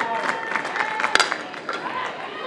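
Ballpark crowd noise with scattered clapping. About a second in comes one sharp crack of a softball bat striking a pitch that is hit on the ground.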